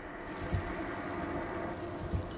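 Steady road and engine noise heard inside the cabin of a car driving along a highway, with a soft low thump about half a second in.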